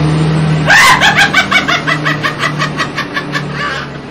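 A man's long, rapid laugh, about seven even pulses a second and gradually fading, over the steady hum of a truck engine running.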